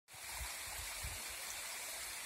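Creek water running over a rock slab, a steady, even rushing hiss, with a few soft low rumbles.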